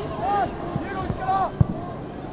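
Short shouted calls from players on a football pitch, with a few dull thumps and one sharp thud of a football being kicked about one and a half seconds in.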